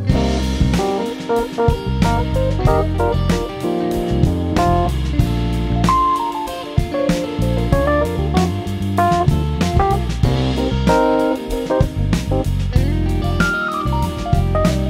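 Instrumental band passage: an electric guitar plays a melodic line over bass guitar and a drum kit.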